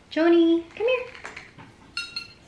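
Two short wordless vocal sounds from a woman, the first held steady and the second rising, then a sharp clink with a brief ring near the end as the glass wine bottle in her hands knocks against something.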